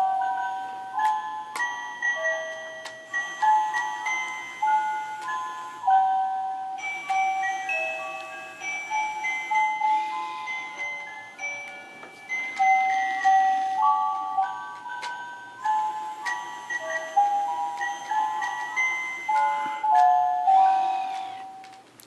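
Animated Santa-in-a-sack pop-up toy playing a tinny electronic melody of bell-like notes through its small speaker, the tune stopping near the end.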